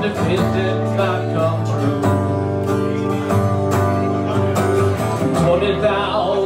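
Steel-string acoustic guitar strummed in a steady country rhythm.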